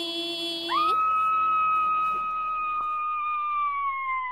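A woman's singing voice holds a low note, then leaps up about a second in to a long, high held note that sags in pitch near the end.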